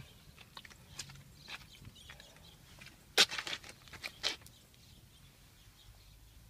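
A few scattered light knocks and clicks, with a sharper knock about three seconds in, from a person moving about in a minivan's cabin while holding the camera.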